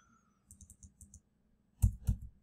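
Computer keyboard keys tapped in a quick run of about six light clicks as a value is typed in, then one much louder click near the end.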